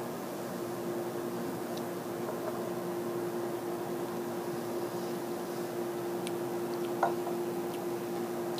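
Quiet room tone with a steady low electrical hum. A brief faint knock comes near the end.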